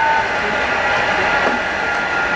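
Countertop blender running steadily with an even whirring noise, churning a thick raw-sweet mixture that is sticking to the sides of the jug and needs scraping down.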